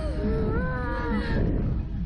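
A young woman's long drawn-out cry, held for about a second and a half with its pitch wavering, over low wind rumble on the microphone of a fast-moving thrill ride.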